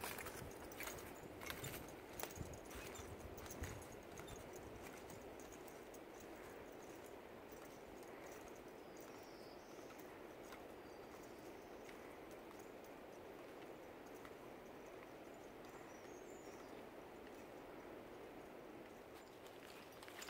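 Faint footsteps on a leaf-covered forest trail with taps of trekking poles, clearest in the first few seconds, then fading to a faint steady hiss.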